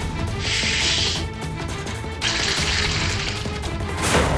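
Background score music with a low steady drone, overlaid twice by a loud hissing whoosh: once shortly after the start and again about halfway through.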